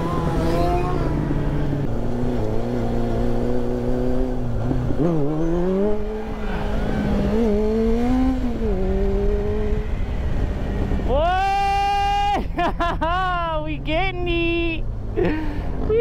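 Motorcycle engine running and revving, its pitch rising and falling with the throttle. In the last few seconds louder, higher-pitched sounds rise and drop sharply several times.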